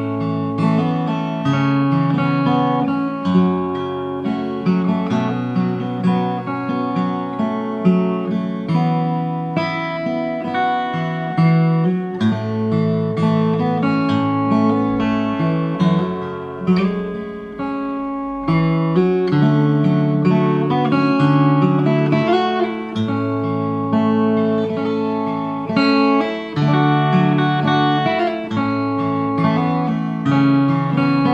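Enya EGA X1 Pro acoustic guitar played fingerstyle unplugged, in its plain acoustic tone with the built-in effects and speaker off: a picked melody over a moving bass line, one continuous passage.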